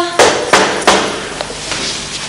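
Several sharp knocks on a hard surface: three close together in the first second, then two fainter ones.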